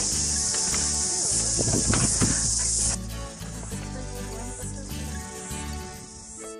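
A loud, steady chorus of insects in the bush, over background music. The insect sound drops away sharply about halfway through, leaving mainly the music.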